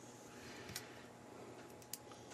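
Quiet room tone with two faint clicks, about a second apart, from handling a laptop hard drive, its metal mounting bracket and a small screwdriver while the bracket screws are being fastened.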